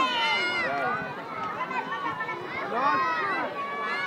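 Children's high voices chattering and calling out over one another, with general outdoor playground bustle beneath.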